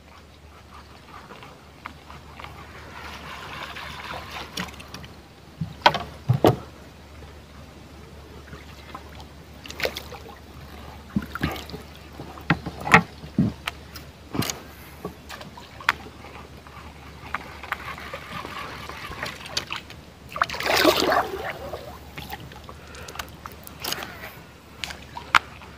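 Water lapping and trickling around a small wooden boat on a river, with scattered sharp knocks against the hull. A louder splash comes near the end.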